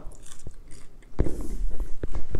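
A person biting and chewing a mouthful of garlic fries close to the microphone, with a few short sharp mouth clicks. The chewing gets louder about a second in.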